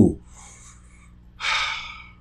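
A man's breathy gasp about a second and a half in, fading over half a second, after a short voiced sound falling in pitch at the very start.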